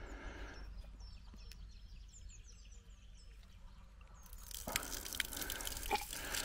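Faint bird chirps, then about four seconds in a steady rushing hiss as pumped water gushes out of a valve on a polyethylene pipe that has just been opened and splashes down.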